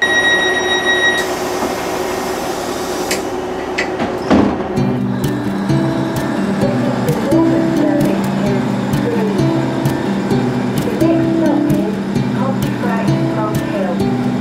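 A train door warning tone sounds for about a second, followed by a hiss and a knock about four seconds in as the door shuts. Background music with a stepping melody then plays.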